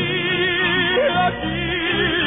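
Orchestral Spanish ballad: a male voice holds long notes with vibrato over strings and a pulsing bass line.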